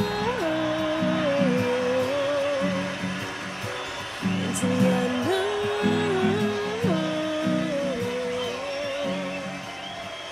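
Background song: a voice singing long held, wavering notes over an instrumental backing, easing off in level near the end.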